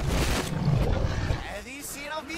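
A dragon's roar from an animated film soundtrack, played backwards: a loud, harsh burst lasting about a second and a half, heavy in the low end, followed by voices running in reverse.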